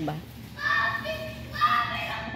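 A young child's high-pitched voice, heard in two short stretches, one about half a second in and another near the end.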